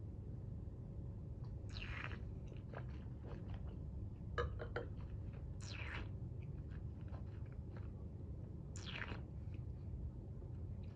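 A mouthful of red wine being slurped, with air drawn through it to aerate it on the palate: three short hissing sucks a few seconds apart. About four and a half seconds in, a few light clicks as the glass is set down on the table.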